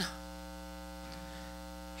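Steady electrical mains hum, a low buzz made of many evenly spaced tones, with no change throughout.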